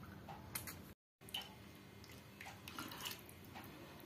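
Faint, wet eating sounds of soaked rice (panta bhat) eaten by hand: small squelches, lip smacks and mouth clicks scattered through. The sound cuts out briefly about a second in.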